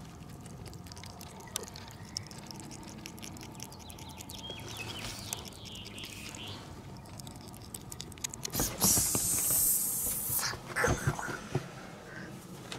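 American mink eating meat, its chewing heard as a dense run of fine wet clicks. About nine seconds in there is a loud hissing rush lasting roughly two seconds, then a few sharp knocks.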